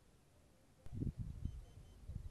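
Wind rumbling and buffeting on the microphone, starting abruptly after a click about a second in, in uneven low gusts. Near the end come three faint, short, high beeps.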